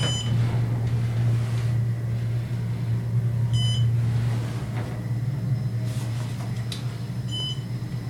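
Otis hydraulic elevator car in motion with a steady low hum, and a short high floor-passing beep three times, roughly every three and a half to four seconds.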